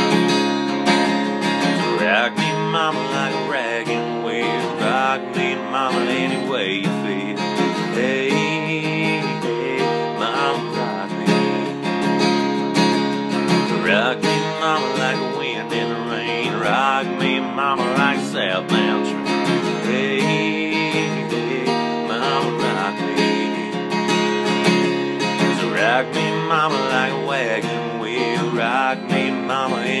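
Capoed steel-string acoustic guitar strummed steadily through the song's chord progression in an instrumental break, with a wavering melody line rising above the strumming at intervals.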